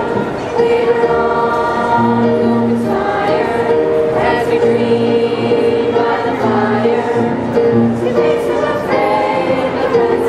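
Middle-school mixed chorus of 6th to 8th graders singing together in held, sustained notes.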